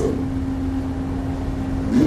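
A steady low hum, a single held tone over a low rumble, that fades just before the end.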